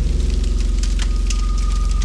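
Cinematic background score: a low, rapidly pulsing drone with faint crackling clicks over it. A thin, steady high tone joins about a second in.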